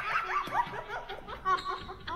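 High-pitched laughter: a quick run of short rising giggles that overlap one another.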